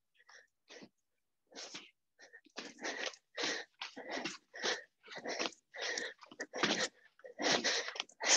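Sharp, rhythmic puffs of breath from a woman exercising hard through a fast hopping footwork drill, about two a second, getting louder and steadier after the first second or so.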